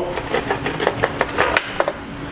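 Irregular knocks and clunks from a vintage outboard motor being handled and set onto its motor stand, with a faint steady hum underneath.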